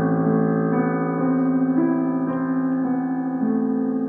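Piano played by a young child: a slow melody of single notes, a new note about every half second, ringing over held low notes.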